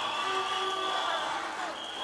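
Low, steady studio-audience crowd noise with faint voices in it.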